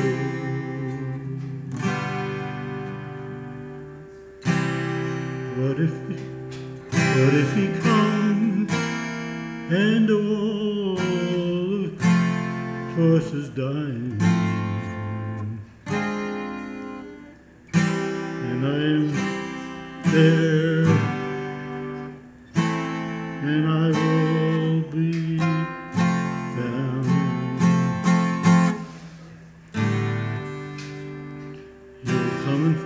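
Twelve-string acoustic guitar played solo, with chords and notes struck every second or two and left to ring out between strokes.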